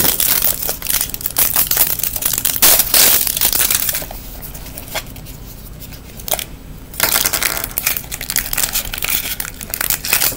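Crinkling and crackling of wrapper and a plastic LOL Surprise ball being handled and opened by hand. The crackling eases off in the middle for a few seconds, broken by a couple of single clicks, then picks up again.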